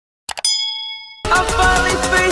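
Two quick mouse-click sound effects, then a bright bell-like ding that rings and fades for under a second. About a second and a quarter in, electronic intro music cuts in loudly.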